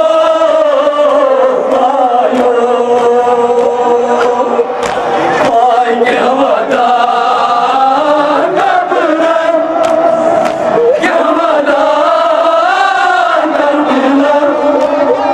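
Several men chanting a Kashmiri noha, a Muharram lament, into handheld microphones, in long held, wavering notes.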